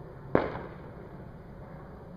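A single sharp firework bang about a third of a second in, fading away over about half a second, over steady low background noise.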